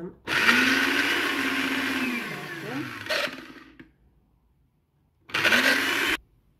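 Countertop blender grinding cilantro, parsley and garlic: the motor runs steadily for about two seconds, then winds down with falling pitch and stops. A second short pulse starts near the end, rising in pitch as the motor spins up.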